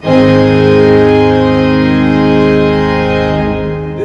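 Three-manual Olive organ sounding one loud, full sustained chord, struck at once and held for about four seconds before it is released. Two voices are layered, with the volume opened up.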